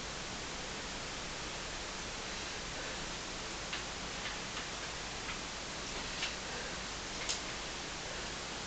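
Steady hiss with a handful of light, irregular clicks in the second half.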